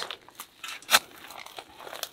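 Steel spade blade pushed into gravelly soil: a few small crunches and one sharp clack about a second in.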